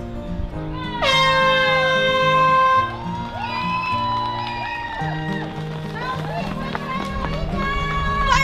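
An air horn blasts once, about a second in, for just under two seconds, signalling the start of the race. Background music with a steady beat runs under it.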